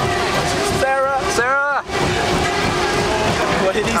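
Goliath steel hyper coaster train running along the track at speed, a steady rush of wheel rumble and wind on the microphone. A rider's voice calls out twice about a second in.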